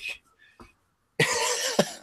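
A man's short, breathy, cough-like laugh about a second in, after a pause.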